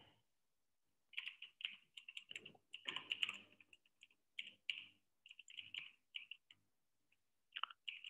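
Faint typing on a computer keyboard: a quick string of keystrokes starting about a second in, a short pause, then a few more keystrokes near the end.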